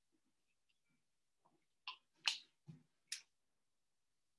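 Four short knocks and clicks from someone moving about and handling things out of view, between about two and three seconds in, the second one the loudest.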